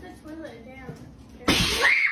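Quiet low voices, then about one and a half seconds in a sudden loud yell rising in pitch: a person's cry at a jump scare.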